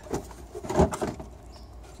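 Plastic car headlight assembly being pulled out of its mounting: a click just after the start, then a short clatter of knocks and rattles about three quarters of a second in.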